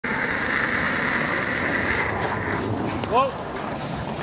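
A curling stone and the thrower's slider gliding over pebbled ice during the delivery, a steady hiss that thins out about two and a half seconds in. Near the end a player shouts 'whoa' to the sweepers.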